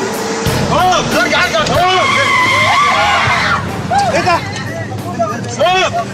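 Several people shouting and screaming in alarm inside a moving minibus, in short yells, with one longer high cry lasting about a second and a half near the middle. Vehicle noise and music run underneath.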